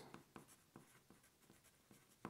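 Faint scratching of a wooden pencil writing on paper: a few short, light strokes.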